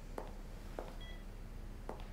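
Hospital patient monitor giving one short high beep about halfway through, over a quiet room with a few faint clicks.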